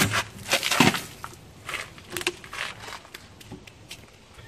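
A thin plastic water bottle, just slashed through by a knife, hits the ground with a sudden crack, then its plastic crackles and crinkles in a run of bursts, loudest about a second in, dying away to scattered clicks.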